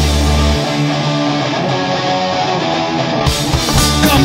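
Punk rock band playing an instrumental passage with guitars. The sound thins out as the bass drops away about half a second in, and the full band sound comes back in just after three seconds.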